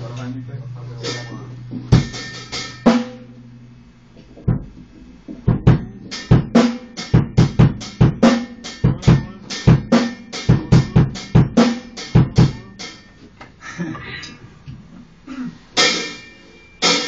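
Drum kit played by hand: a few scattered hits, then a fast run of drum strokes, about three or four a second for some seven seconds, before looser hits near the end. A steady low hum sits under the opening and stops about four seconds in.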